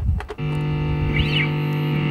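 Plato Stratocaster-style electric guitar played through an amp with distortion. A few short picked notes come first, then a chord is struck about half a second in and left to ring steadily.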